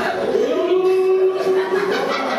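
A voice slides up into one long held note, over audience chatter in a large room.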